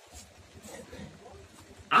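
A pause in a man's sermon over a microphone, with only faint background sound. His voice comes back abruptly and loudly near the end.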